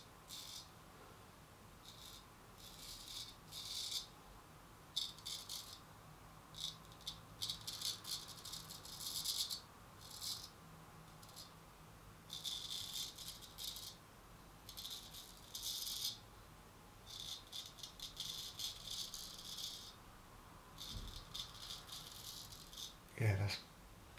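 Hollow-ground Thomas Turner straight razor scraping through lathered stubble on the neck: runs of short, crisp, high rasping strokes with brief pauses between them.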